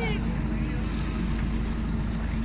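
A boat's engine runs with a steady low hum, over the wash of water churned up by a whale surfacing beside the hull.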